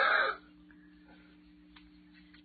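A short laugh, then faint rubbing of hands spreading coconut oil over a bald scalp, a sound likened to exfoliating, over a steady low electrical hum.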